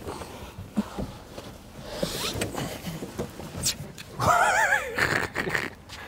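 Rustling and light knocks of a person climbing out of a small car through its open door, with a short wavering laugh about four seconds in.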